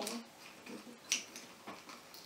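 A few brief, faint clicks of a small plastic scoop against a small plastic bowl as hard candy pieces are scooped.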